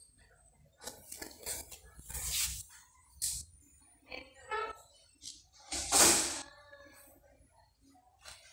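Busy shop background with indistinct voices and scattered noises. A short pitched vocal sound rises about four seconds in, and a loud noisy burst comes about six seconds in.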